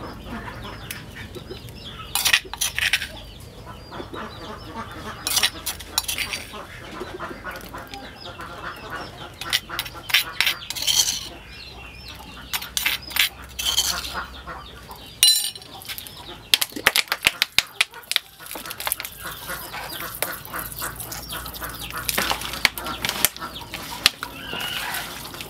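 Chickens clucking, over scattered clicks and knocks from raw pork being seasoned and mixed by hand in a plastic bowl.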